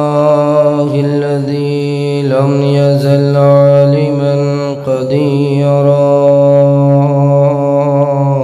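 A man chanting the Arabic opening praise of a sermon in a slow, melodic voice, holding each note for seconds at a time, with a short break for breath about five seconds in.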